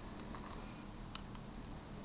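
Homemade pulse motor with copper coils and a small rotor giving a few faint ticks, in two pairs about a second apart, as it turns slowly on a weak homemade cell, over a steady low hum.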